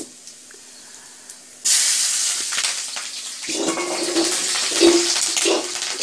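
Green chillies dropped into hot oil and browning cumin seeds in a kadhai, starting a sudden loud sizzle a little under two seconds in that carries on steadily.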